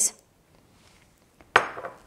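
A single sharp clack about one and a half seconds in: kitchen utensils knocking on cookware as chopped dried cherries are scraped from a bowl into the pan.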